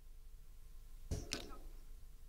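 A pause in speech over a hand-held microphone, with a faint steady hum and a brief intake of breath about a second in.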